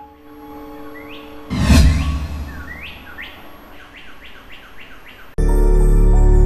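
Station ident sound design: a sudden swooshing hit about a second and a half in, then a run of short, rising bird chirps, about three a second. Loud music cuts in abruptly near the end.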